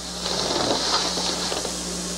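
Steady electrical hum with an even hiss: the background noise of an old recording, heard in a pause between speech.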